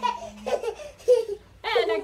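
Short bursts of laughter from a woman and her toddler, with rising and falling squeals, and a brief thump about a second in.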